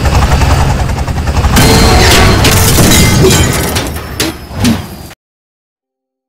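Loud crash sound effect: a deep rumbling roar with crackling and breaking, strongest in the middle, fading and then cutting off suddenly about five seconds in.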